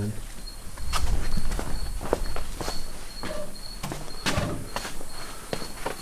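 Footsteps on a shop floor and the rumble of a handheld camera being carried, with scattered light clicks, loudest about a second in. A faint high chirp repeats about twice a second behind it.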